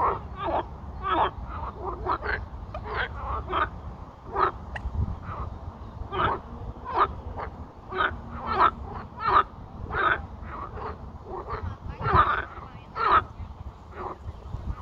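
Several frogs croaking in a chorus: short, rasping calls repeated about once or twice a second, overlapping from more than one frog. It is a breeding chorus of male frogs calling.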